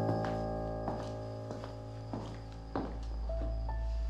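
Dramatic background score: a sustained low chord over a deep bass, with soft knocks about every two-thirds of a second, and a few higher held notes stepping in near the end.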